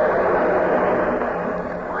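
Theatre audience applauding steadily, easing off slightly near the end, heard on an old band-limited radio broadcast recording.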